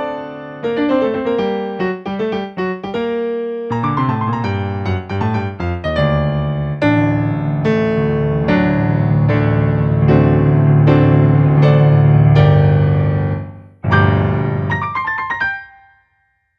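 Yamaha digital piano played solo: a fast, flamenco-like piece of rapid repeated notes that builds to a loud, sustained passage. After a brief break about fourteen seconds in, a last short burst of chords ends the piece and fades out.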